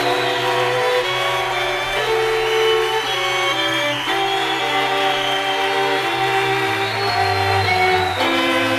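String quartet of two violins, viola and cello playing sustained, slowly moving notes over a held low cello line, which steps down near the end.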